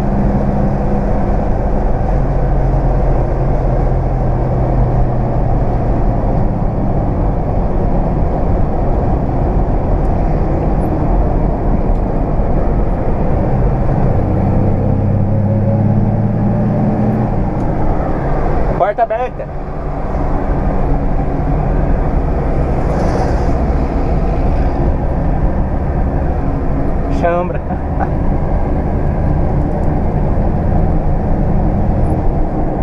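The six-cylinder engine of a 1969 Ford Aero Willys runs steadily at highway speed, heard inside the cabin over road and wind noise. The engine note grows stronger for a few seconds near the middle, then dips briefly twice, once just after the middle and once near the end.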